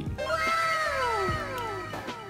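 A single drawn-out pitched cry that rises briefly, then falls slowly in pitch for about a second and a half, over background music.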